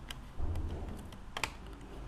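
A handful of sharp, separate clicks from a computer being operated while browsing files, the clearest about one and a half seconds in, with a soft low thud about half a second in.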